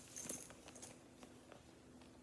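Faint handling of a leather crossbody bag: a few light clicks and clinks from its metal strap clasps as the long strap is lifted, mostly in the first second.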